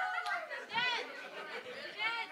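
Indistinct chatter of several voices off the microphone, quieter than the amplified speech around it, in a large, reverberant room.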